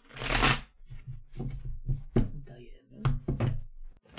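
A deck of tarot cards being shuffled by hand: a loud rush of cards right at the start, followed by lighter clicks and taps of the cards.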